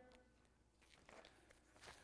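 Near silence: room tone with a faint low hum and a few very faint soft sounds about a second in and near the end.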